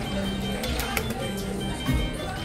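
Dragon Link slot machine playing its hold-and-spin bonus music, with chiming tones and clicks as the open reels spin again and a free spin is used up.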